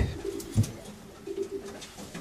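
Racing pigeons cooing in a loft: several low coos overlap and repeat. A single soft knock comes about half a second in.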